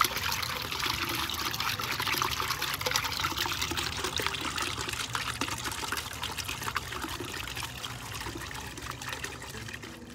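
Small garden bubbler fountain: water bubbling up and splashing steadily back into its round stone bowl, easing off slightly toward the end.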